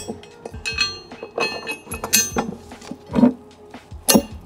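Metal clinking and knocking as a steel mounting bracket is slid onto through-bolts and set against a wooden block: several short ringing clinks, then a duller knock about three seconds in.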